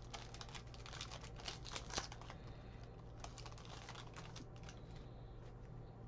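Foil wrapper of a trading-card pack crinkling and tearing open, with a dense run of small crackles for the first two seconds or so. Then the cards are slid out and flipped through, giving sparser light clicks.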